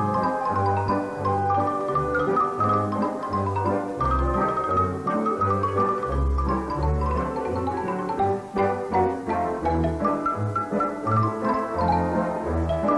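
Xylophone playing a fast Romanian folk tune in quick runs of notes, accompanied by a folk band of violins, accordion and double bass keeping a steady bass beat.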